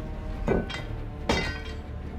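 A handgun set down on a train carriage floor: two metallic clinks, each with a short ring, about half a second and just over a second in, over a steady low rumble.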